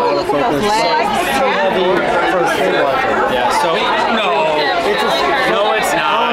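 Several people talking at once, overlapping conversation and chatter around a table with no single voice clear.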